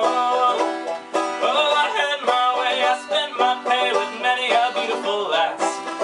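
A banjo strummed and picked as accompaniment to a man singing a folk song, the voice and the banjo notes going on together without a break.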